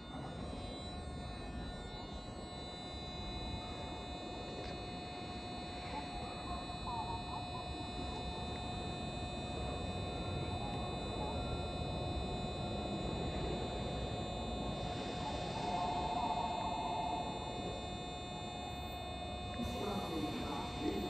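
Electric commuter train standing at the station platform, its onboard electrical equipment humming steadily with a held mid-pitched tone and fainter high whines over a low rumble that slowly grows. A brief warbling tone comes in about three-quarters of the way through.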